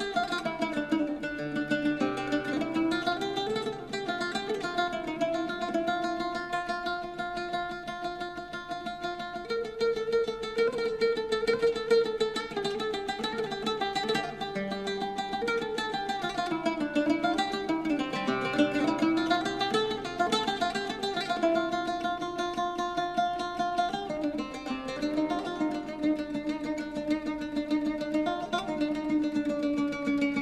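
Solo oud playing an improvised taqsim in maqam Rast: rapid plucked notes, many per second, carry a melodic line that slides up and down in pitch in the middle stretch.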